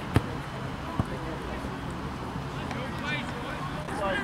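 A football being kicked twice, two sharp thuds about a second apart, the first the louder, over faint distant shouts from players on the pitch.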